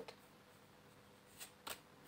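Tarot cards being shuffled by hand: two short, soft card rustles in quick succession about a second and a half in, against near silence.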